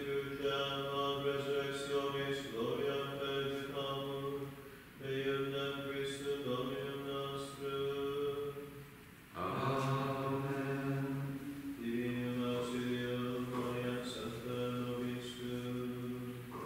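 Male voices chanting a liturgical prayer, held mostly on one pitch, in long phrases with brief pauses for breath about five and nine seconds in.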